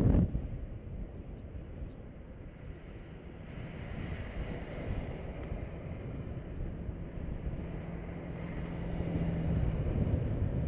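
Wind rushing over the microphone of a camera riding on a moving bicycle, with the rumble of tyres rolling on pavement. A faint steady low hum comes in about halfway through and grows louder towards the end.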